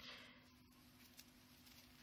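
Near silence: room tone, with a faint soft rustle right at the start.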